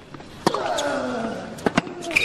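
Tennis ball struck by racket during a baseline rally: one sharp hit about half a second in, then two quick knocks close together near the end.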